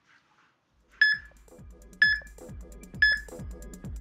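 Tabata interval timer's countdown: three short electronic beeps exactly one second apart. Electronic dance music with a steady beat starts up underneath after the first beep.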